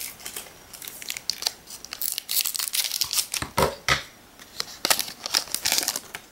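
Foil wrapper of a Japanese Pokémon card booster pack crinkling and being torn open, a dense run of sharp crackles that gets busier about two seconds in.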